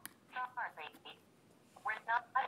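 A click, then a short snatch of a recorded voice played quietly and thinly through a phone's small speaker. This is a Ring app quick-reply message being played.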